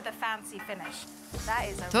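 Faint sizzling of stir-fried noodles and seafood in a frying pan over a gas flame, between a short spoken word and background music with a deep bass that comes in a little past halfway, with a voice starting over it.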